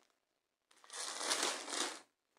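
Rustling of hands and yarn moving against the tabletop while crocheting, a single scratchy burst of about a second that starts under a second in.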